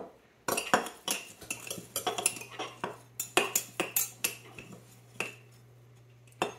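A metal spoon clinking and scraping against a glass mason jar while stirring dry rolled oats and protein powder: a quick, irregular run of clinks that stops about five seconds in.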